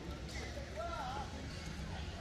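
Outdoor park ambience: indistinct distant voices, with footsteps on a stone-paved path under a steady low rumble.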